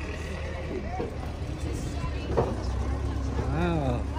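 Low, steady engine drone from the vehicle towing a hayride wagon, with people chatting on the wagon.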